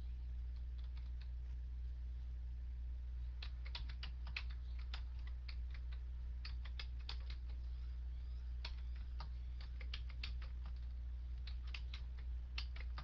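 Typing on a computer keyboard: scattered keystrokes at first, then quick bursts of clicks from about three seconds in, over a steady low electrical hum.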